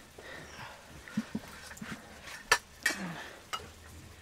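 Metal serving spoon scooping cooked rice out of a clay pot and onto steel plates, with a few sharp clinks of metal on metal, the loudest about two and a half seconds in.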